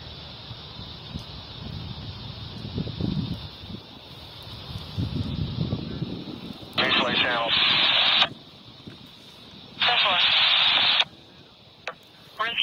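A low rumble for the first half, then two short two-way radio transmissions about seven and ten seconds in, each a burst of clipped, garbled voice running into a hiss of static; the radio bursts are the loudest sounds.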